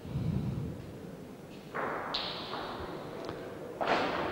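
A bocce shot at the pallino: a low rumble, then a stretch of noise, then a sharp knock near the end as the thrown bocce strikes the pallino.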